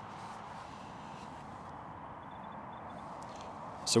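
Quiet, steady outdoor background noise with no distinct event, and a faint short run of high pips a little past halfway.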